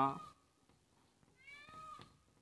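A man's spoken word trails off at the start; then, after a short pause, a faint cat meow with a slightly rising pitch about a second and a half in.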